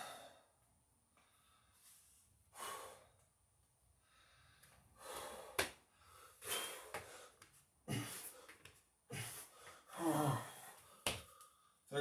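A man breathing hard between and during Navy SEAL burpees: a string of loud exhales and gasps, a couple with a voiced edge. Short sharp thumps from hands and feet landing on the exercise mat come in between.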